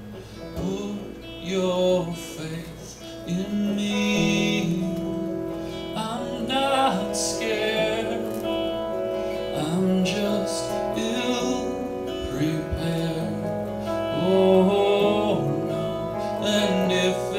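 A man singing a slow song to his own electric guitar, live.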